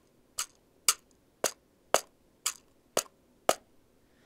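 Pocket cajon, a small hand-held wooden box drum, tapped with the fingers in a samba rhythm: seven sharp wooden strokes at an even pulse of about two a second.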